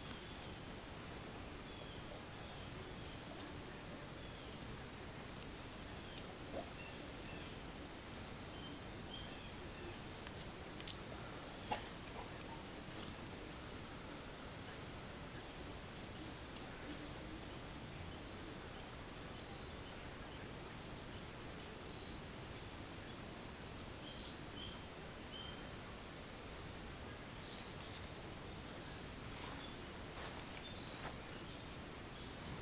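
Summer insect chorus: a steady high-pitched drone with short chirps repeating over it, and a faint click about twelve seconds in.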